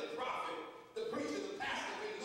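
Speech only: a man preaching into a microphone, in two phrases with a short pause about a second in.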